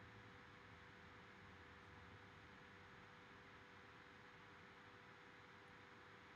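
Near silence: faint steady room tone and microphone hiss with a low hum.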